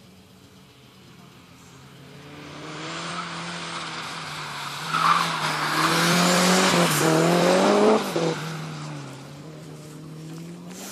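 A sprint car accelerating hard through a bend on wet asphalt and past, its engine revving with rising pitch over loud tyre noise on the wet surface. The sound builds from a couple of seconds in, is loudest from about halfway until about two seconds before the end, then fades as the car moves away.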